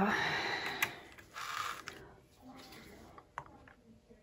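A short hiss of breath about a second and a half in, then a few light clicks and knocks as a clear plastic tray holding a painted tile is handled.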